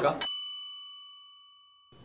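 A single bright bell ding, struck once about a quarter second in, with several ringing overtones that fade away over about a second and a half. The rest of the audio is cut to silence beneath it, as in an edited-in sound effect.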